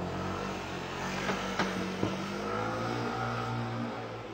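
A motor vehicle engine running and revving, its pitch rising slightly in the second half, with two sharp clicks about a second and a half and two seconds in.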